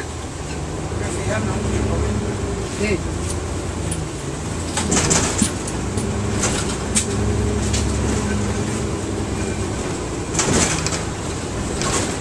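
Interior sound of a moving 1999 NovaBus RTS city bus: steady low diesel engine and drivetrain hum, with two brief louder rushes of noise about five and ten seconds in.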